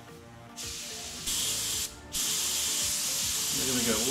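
Airbrush spraying paint, a hiss of air and paint that starts about half a second in and gets louder. It breaks off briefly about two seconds in as the trigger is released, then runs on steadily.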